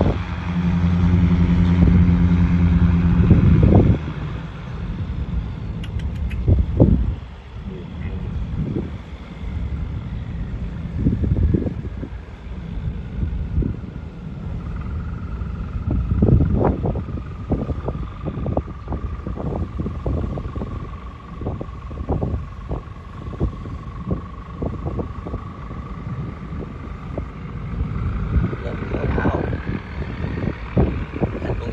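River barge diesel engines running with a steady hum for the first four seconds, then dropping lower. Wind gusts buffet the microphone. A faint engine whine falls and then climbs in pitch toward the end as the barge throttles up.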